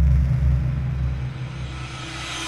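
Cinematic intro sound effect for an animated logo: a deep, sustained rumble that eases off slightly, under a hissing swell that builds up toward a hit.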